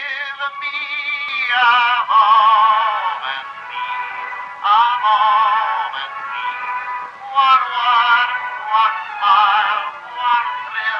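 A high singing voice with wide vibrato, in long phrases with short breaks between them, from an early sound-film soundtrack.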